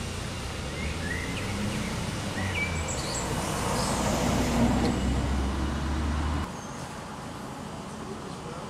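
Street ambience with a car driving past, its tyre and engine noise swelling to a peak about four to five seconds in, over a steady low rumble, while birds chirp. The rumble cuts off suddenly about six and a half seconds in, leaving quieter outdoor background with birds.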